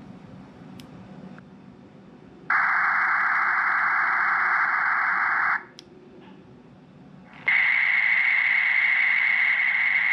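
Two bursts of a Rattlegram (Ribbit) digital text-message signal, each a dense, hiss-like rush lasting about three seconds with a short quiet gap between. The first is the phone's speaker playing the encoded message into a Baofeng handheld that is held on transmit. The second, with a steady tone running through it, is the same message repeated back by the other radio in parrot mode and heard through the Baofeng's speaker.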